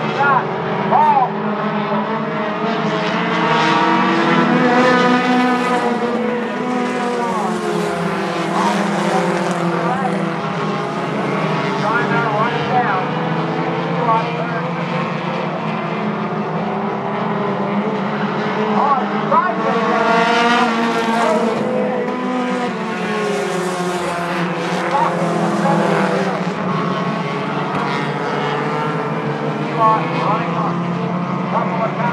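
Four-cylinder compact race cars running laps on a paved short oval. The engines rev up and down through the turns and swell louder several times as cars pass.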